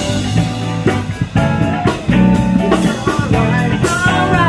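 Live band playing: drum kit keeping a steady beat under electric guitars.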